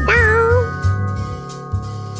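Cartoon soundtrack: a doorbell-like ringing tone that fades out over about a second and a half, with a short wavering squeaky cartoon vocal sound in the first half second, over background music.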